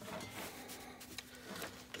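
Quiet workbench room with faint handling noises, a few light ticks and rustles, over a low steady hum.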